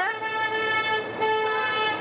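A vehicle horn sounding one long, steady note.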